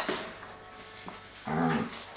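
Two dogs wrestling: a sharp click at the start, then one short low growl about one and a half seconds in.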